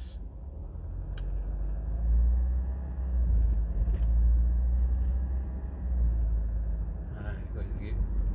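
Low rumble of a car's engine and tyres heard from inside the cabin while driving, swelling about two seconds in and easing off near the end, with a short click about a second in.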